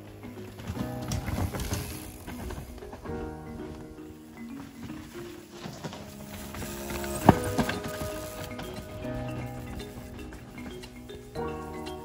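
Background music with a steady melody over the rattle and clatter of a downhill mountain bike riding past on a dirt trail, with one sharp knock about seven seconds in.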